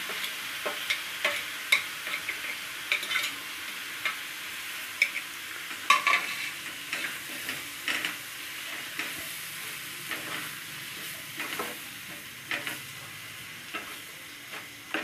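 Onion-tomato masala sizzling in a nonstick kadhai while a spatula stirs in bitter gourd seeds and peel, with irregular scrapes and taps of the spatula against the pan over a steady frying hiss.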